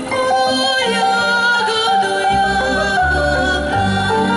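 A women's folk-style vocal group singing into microphones over instrumental accompaniment. A low bass line comes in about two seconds in.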